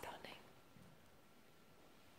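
A man's hushed voice saying one word at the start, then near silence: room tone.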